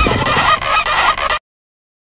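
Repeated honking calls that cut off suddenly about a second and a half in.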